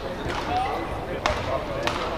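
Badminton rally: sharp smacks of a racket hitting the shuttlecock, and of play on court, one a little over a second in and another near the end, over the steady murmur of an indoor sports hall.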